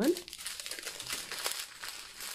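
Small clear plastic bags of diamond-painting drills crinkling as they are handled and laid down on the plastic-wrapped canvas.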